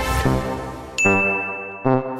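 Short musical logo jingle: pitched chords struck several times, each dying away, with a high, steady ding ringing from about halfway in.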